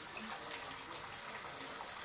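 Bathtub tap running, a steady stream of water falling into the tub and splashing onto a passive water sampler lying by the drain.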